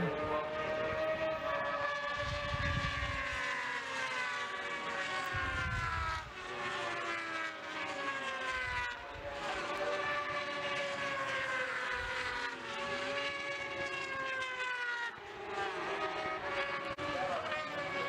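600cc racing motorcycles at high revs passing one after another, each engine note falling in pitch as it goes by, in about five repeated sweeps.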